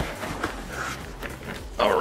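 Soft rustling and handling noise of a cardboard box and its packing as a heavy machine base is worked out of it, a few faint scrapes over a low hiss.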